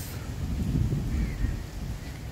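Wind buffeting a phone's microphone outdoors: an uneven low rumble that rises and falls.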